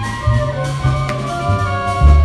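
A small live jazz band playing: horns hold several sustained notes over a shifting bass line and drums, with a sharp drum or cymbal stroke about a second in.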